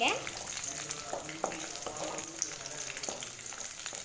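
Sliced shallots, garlic and a green chilli sizzling in hot oil in a metal pan, stirred with a wooden spatula, with a few short scrapes of the spatula.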